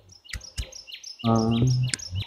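Small birds chirping: many short, high notes, each falling quickly in pitch, repeating several times a second. A person's drawn-out 'ah' starts about a second in.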